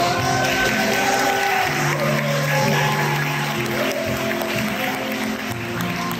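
Instrumental interlude of a piano ballad backing track, steady sustained chords, with guests applauding over the first part.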